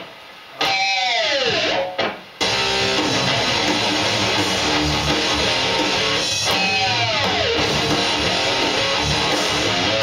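Electric guitar phrase with notes bending in pitch, then a full rock backing track comes in about two and a half seconds in under the guitar lead.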